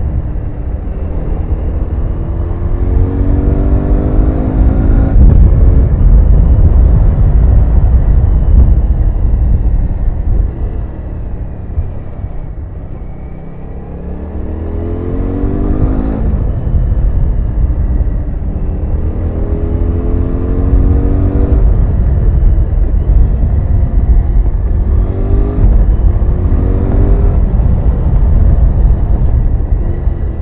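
Honda CX650 V-twin motorcycle engine under way, revs climbing in several pulls through the gears and easing off once about halfway through. Heavy wind and road rumble sound under it.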